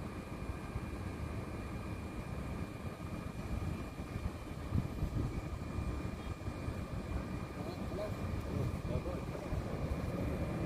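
Distant fireworks display heard as a continuous low, uneven rumble of bursts, with a sharper bang about five seconds in.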